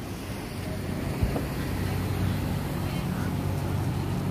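Steady low drone of idling vehicle engines under outdoor noise, with one soft thump a little over a second in.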